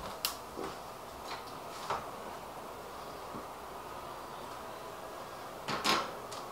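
Kitchen clean-up: scattered light knocks and clicks of utensils and containers being handled and put away, with a louder clatter near the end.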